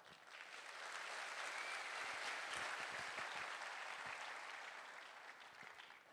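Audience applauding, building up quickly, then tapering off over about five seconds.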